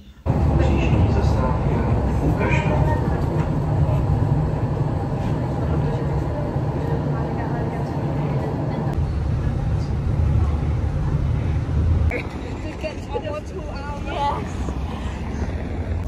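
Steady low rumble of a moving city transit vehicle heard from inside its cabin, with faint voices. About twelve seconds in the rumble stops and quieter sound with voices follows.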